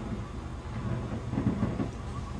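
Boat engine running with a steady low rumble, with a few light knocks over it.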